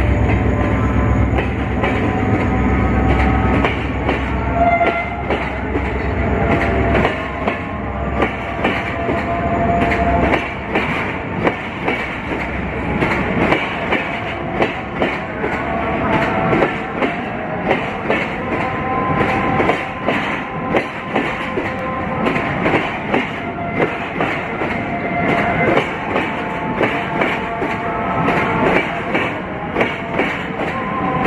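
Passenger coaches of a train rolling past close below, wheels clacking in a steady rhythm over rail joints and points. The diesel locomotive's low rumble fades over the first few seconds, and brief thin wheel squeals come and go.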